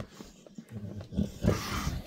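A dog making a few short, low grumbling growls.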